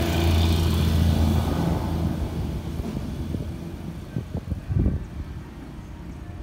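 A motor vehicle's engine hums steadily, then fades away within about three seconds. A few low thumps follow near the end.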